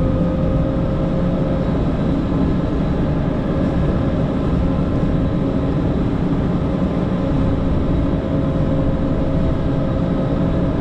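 PistenBully 600 winch snow groomer's engine running steadily while it pushes snow with its blade, heard from inside the cab. A steady whine sits over the low engine rumble.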